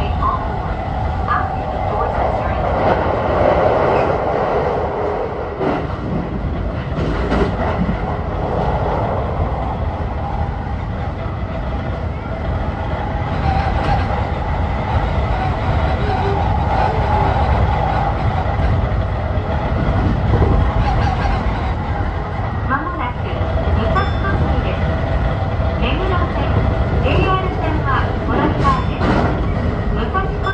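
Sotetsu 20000 series electric train running at speed, heard from inside the cab: a steady rumble of wheels on rails with a motor hum. A few short clicks of the wheels over rail joints come in the last several seconds.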